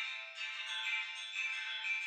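Quiet music of high, sustained electronic tones with no bass, like a soft synth pad.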